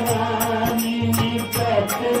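A man singing a Hindu devotional chant in long, held melodic lines, over a steady low drone. Percussion clicks keep an even beat of about three strokes a second.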